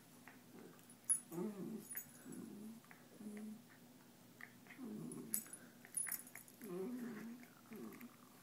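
Two small terriers, a West Highland white and a Cairn, play-wrestling and growling in about five short, low bursts, with a few sharp clicks between them.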